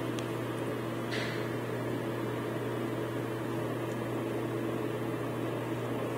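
A steady low electrical hum of a running appliance in a small room, with a brief rustle about a second in.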